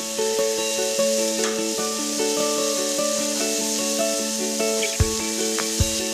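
Sizzling of pork tenderloin and sweet potato slices searing in a hot frying pan, under background music with steady held notes; a low bass beat comes in about five seconds in.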